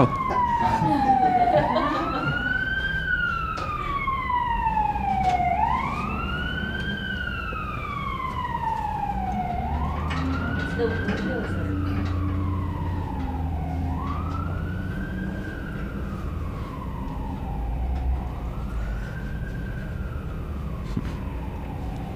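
An emergency-vehicle siren wailing, each cycle rising quickly and falling slowly, repeating about every four seconds and growing fainter toward the end.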